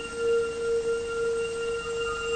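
Background music: a single sustained, bell-like note held steadily, wavering slightly in level, with fainter higher tones above it.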